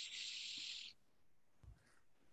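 A soft, steady hiss that stops about a second in.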